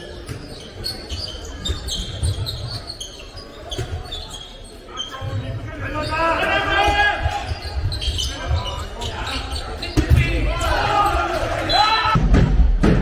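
Handball bouncing on a sports-hall floor in an echoing hall. Shouting voices come in about halfway through and get louder near the end.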